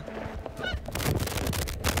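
Jostling body-worn camera audio during a run for cover: dense rustling and clattering starts about half a second in, with a short honk-like cry in among it.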